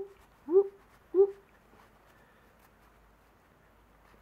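A dog giving three short, pitched yips about half a second apart, each bending upward in pitch.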